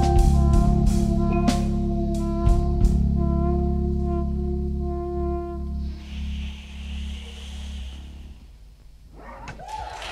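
Live band with brass, electric guitar and drum kit finishing a song. Drum hits sound over a held brass chord for the first few seconds, then the chord fades out by about six seconds. A soft ringing wash follows and dies down near the end.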